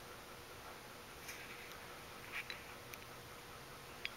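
Quiet room tone: a faint steady hiss with a few soft clicks, about a second in and again past the middle.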